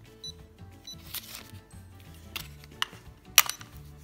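A steel ratchet being fitted onto a digital torque adapter, with a few metallic clicks and clacks. The sharpest click comes about three and a half seconds in. Faint background music plays throughout.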